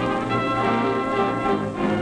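Orchestral film-score music with brass prominent, sustained chords played at a steady level.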